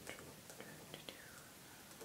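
Near silence: faint whispery breath and a few soft mouth clicks from a woman's close-miked voice.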